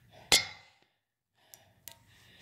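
A sharp knock with a brief ringing tail about a third of a second in, then a short dead gap and two faint clicks near the end: handling noise from the phone being moved.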